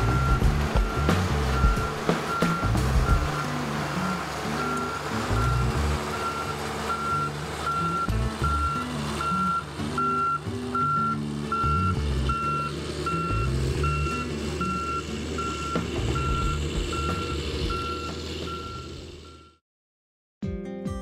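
Snowcat's reversing alarm beeping steadily, about two beeps a second, over background music, fading out near the end.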